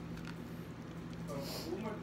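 A faint human voice comes in about a second and a half in, over a steady low hum; no words can be made out.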